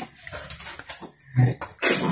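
A dog making two short sounds: a low one a little past halfway, then a sharper one near the end.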